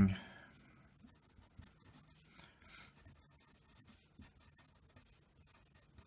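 Pencil writing on lined paper: faint, irregular scratching of the lead as a line of words is written.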